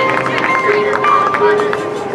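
Marching band playing its field show: held brass and wind notes over steady drum strokes.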